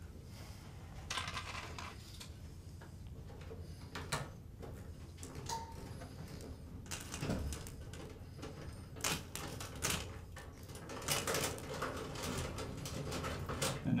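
Small clicks, taps and rustles of stiff electrical wires and plastic twist-on wire connectors being handled and screwed together by hand, coming in irregular clusters over a faint low hum.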